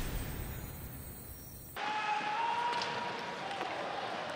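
The fading tail of a TV sports broadcast's intro whoosh and music, cut off suddenly about two seconds in. It gives way to the quieter sound of a hockey arena during play: crowd murmur, a faint held tone and light knocks from the ice.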